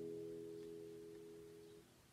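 The last chord of a Suzuki nylon-string classical guitar, capoed, rings out and fades away, then cuts off just before the end.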